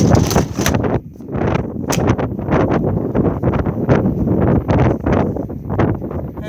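Wind buffeting the microphone, with irregular clatter and knocks from a plastic toilet cassette being handled and pushed back into its locker.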